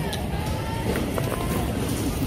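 Outdoor street ambience: a steady low rumble of background and wind noise on the microphone, with faint distant voices and a couple of light ticks about a second in.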